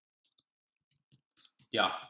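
Computer keyboard keys clicking faintly as a few characters are typed, the keystrokes falling in the second half.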